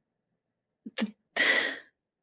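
A woman says one short word, then lets out a short, sharp, breathy burst of laughter about a second and a half in.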